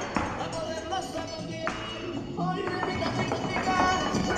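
Mexican folk dance music with a dancer's shoes tapping out zapateado footwork on a hard floor.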